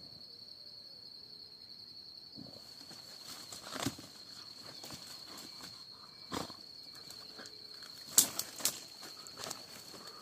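Rustling and dry twig snaps as a hunting dog noses into a brush pile after an animal hidden inside, with a few sharper crackles about 4, 6½ and 8 seconds in. A steady high insect tone runs underneath.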